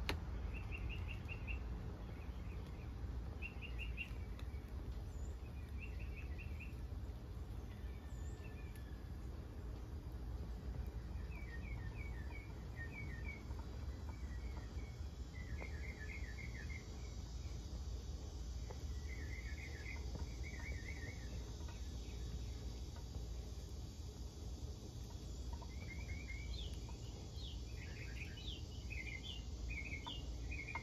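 Birds chirping in short, quick trills every couple of seconds, with more and higher calls near the end, over a steady low background rumble.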